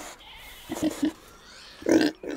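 A young woman whimpering in short tearful cries: three quick ones about three-quarters of a second in, then a louder one near the end.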